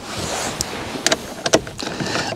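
A soft rushing, rustling noise followed by a few light clicks and taps: small parts being handled at a car's steering column after the steering-wheel bolt has been undone.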